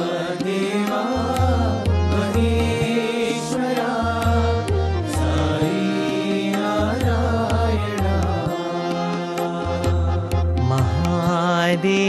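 Devotional Sai bhajan music: sung Indian devotional song over a steady repeating drum beat.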